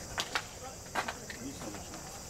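Steady, high-pitched chorus of crickets or other insects trilling, with a few short sharp clicks in the first second.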